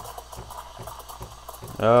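Breville Barista Pro steam wand submerged in whole milk in a stainless steel pitcher, giving a steady hiss as the milk heats through at the end of steaming.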